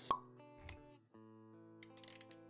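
Sound effects of an animated intro over soft music: a single sharp pop just after the start, a lighter knock a little over half a second in, then steady sustained music notes after a brief drop about a second in.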